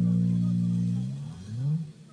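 Live backing band holding a low sustained chord that fades after about a second, then a short rising slide in the low register near the end.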